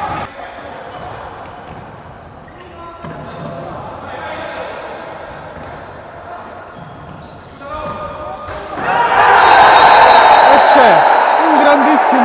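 Futsal play in a sports hall: the ball kicked and bouncing on the wooden floor, with players calling out. About nine seconds in, a sudden burst of loud shouting and cheering breaks out as a goal is scored.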